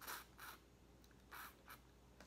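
Boiled crawfish shell being peeled and cracked by hand, four short crackles over two seconds.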